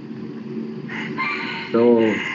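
A long bird call, heard in the background, starts about a second in and runs on past the end, under one spoken word.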